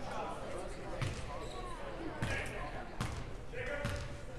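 A basketball bounced four times, about a second apart, on the hardwood court floor as the shooter dribbles at the free-throw line, with chatter from the crowd in the gym behind it.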